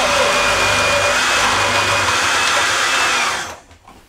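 Electric juicer motor running steadily with a high whine, then switching off about three and a half seconds in and falling away quickly.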